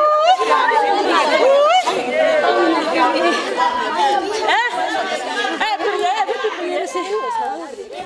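Many people's voices talking over one another in lively group chatter, growing quieter near the end.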